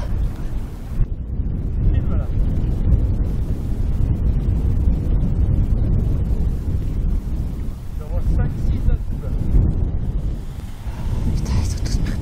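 Strong wind buffeting the microphone: a steady, loud low rumble throughout.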